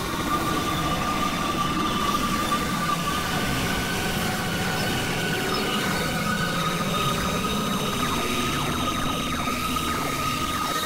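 Experimental synthesizer drone music: sustained high tones held steady over a noisy, rumbling texture, with a few faint gliding tones near the end.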